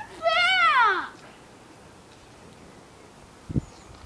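A girl's high, wavering, wordless vocal cry lasting about a second and falling in pitch at the end. A short low thump follows about three and a half seconds in.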